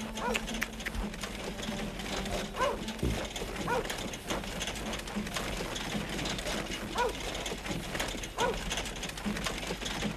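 A harnessed horse being led at a walk: irregular hoof steps and harness clinks over an outdoor background, with a few short chirps scattered through.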